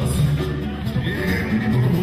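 Live band music: a funk groove with a repeating bass line, and a high wavering tone about halfway through.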